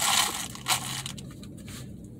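Handling noise close to the microphone: a crunchy rustle at the start, a short sharp scrape under a second in, then softer rustling over a faint low hum.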